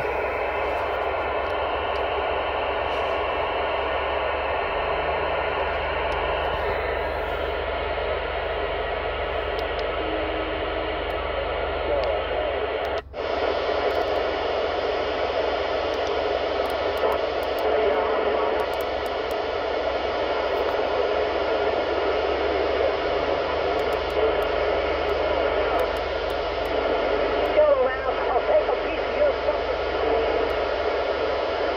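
Steady static and hiss from a mobile export CB radio's speaker while it is switched from sideband to AM and tuned across channels, with faint distant voices coming through the noise as skip. About halfway through, the noise cuts out for an instant as the radio changes frequency.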